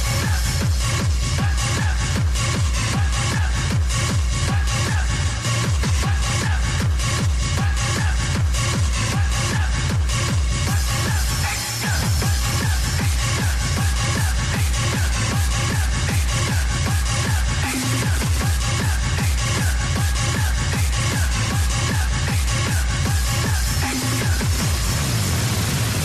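Hardstyle dance music from a DJ set: a steady, fast, hard kick drum beat with synth lines over it, the kick coming back in right at the start after a short break.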